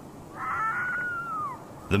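Ezo (Hokkaido) red fox giving one long wailing call that holds its pitch and then drops away at the end.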